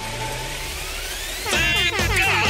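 A rising whoosh sweep that leads into a radio station jingle; the music comes in about one and a half seconds in.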